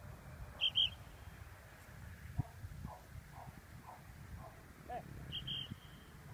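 A bird calling: two short, high double chirps, one about a second in and one near the end, with a run of fainter, lower notes between them. Low wind rumble on the microphone underneath.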